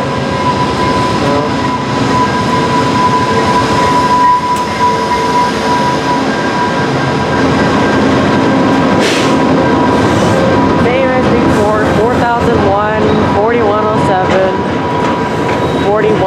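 VIA Rail passenger train arriving: the diesel locomotive passes with a steady engine drone, then the stainless-steel coaches roll by, slowing for the stop. In the last few seconds the brakes squeal in wavering tones as the train comes to a halt.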